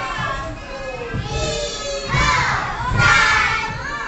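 A roomful of young children chattering and shouting at once, with louder, high-pitched calls about a second in and again between two and three and a half seconds.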